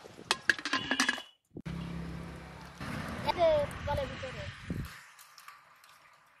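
A metal cooking pot and its lid clinking together as they are handled: a quick run of sharp, ringing clinks in the first second. A voice is then heard briefly a few seconds in.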